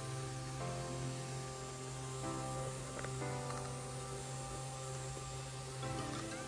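A small battery-powered DC motor runs steadily with a low hum, spinning the bubble machine's fan, under background music with sustained chords.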